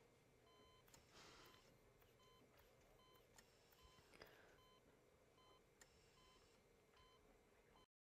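Faint hospital heart monitor beeping steadily, one short high beep about every three-quarters of a second, until the sound cuts off just before the end.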